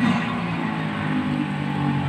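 A motor vehicle engine running steadily: an even, low hum.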